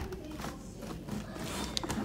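A metal lever door handle and its latch worked by hand: a sharp click at the start and a few lighter clicks near the end.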